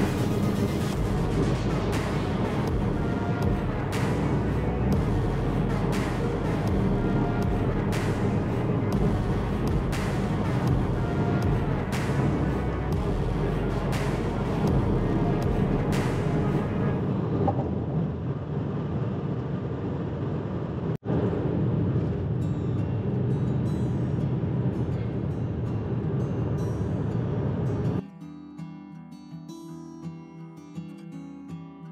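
Background music with a steady beat, about one stroke a second, over a low rumble. Near the end it cuts to a quieter acoustic guitar strumming piece.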